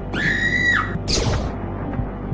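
A high-pitched scream lasting under a second that falls away at its end, over dark, ominous background music, followed at about a second in by a short hissing burst.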